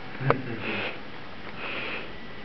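A person sniffing twice, about a second apart, right after a short laugh and a spoken "no".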